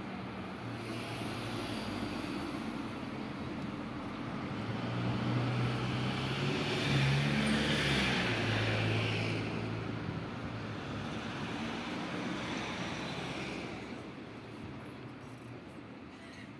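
A motor vehicle passing by: a low engine hum and rushing noise swell to a peak about halfway through, then slowly fade.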